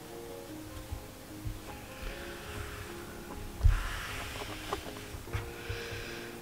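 Soft background music of slow held notes. About halfway through there is rustling and a low thump as hands stretch and handle the crocheted yarn fabric.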